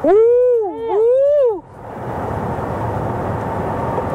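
A loud, high-pitched two-part whoop in the first second and a half. It is followed by steady road and wind noise inside the cabin of a Toyota bZ4X electric SUV under hard acceleration.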